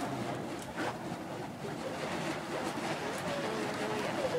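Burning fire poi swung on chains, a steady rushing whoosh of the flames moving through the air, with faint voices in the background.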